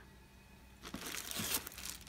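Thin plastic packaging crinkling and rustling as a wrapped item is pulled out of a cardboard box, starting about a second in.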